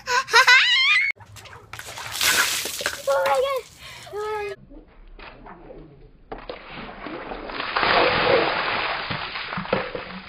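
A child laughing briefly at the start. From a little past the middle, the steady rush and splash of a bucket of water being tipped over a person's head, loudest about two seconds after it begins.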